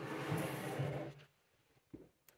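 Handling noise from a camera being moved and repositioned: a rustling, rubbing sound on the microphone that stops about a second and a quarter in.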